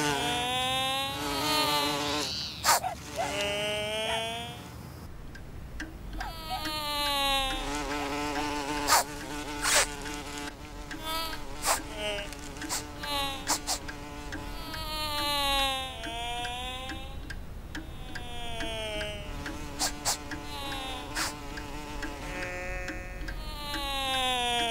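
Buzzing, insect-like tones that keep sliding down in pitch over a second or two at a time, several overlapping, with scattered sharp clicks between them.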